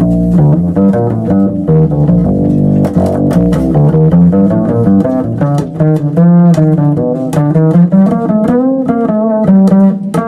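Live jazz trio playing: double bass plucked, with alto saxophone lines that bend and waver in pitch, over drums and cymbals.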